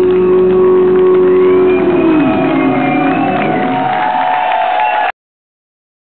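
A live rock band's final sustained chord, led by electric guitar, holds steady and then slides down in pitch about two seconds in. Wavering high shouts and whistles from the audience follow, and the recording cuts off suddenly about five seconds in.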